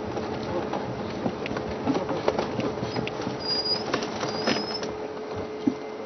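Game-viewing vehicle on the move, with engine noise and frequent rattles and knocks from rough ground, under a steady electrical hum in the broadcast feed. Two short high whistles come in the middle.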